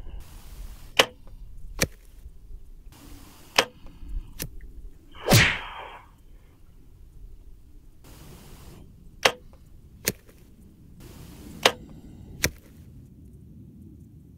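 Four compound-bow shots, each a sharp snap of the released string followed under a second later by the arrow striking the target on hay bales at 50 yards. A louder, longer knock comes about five seconds in.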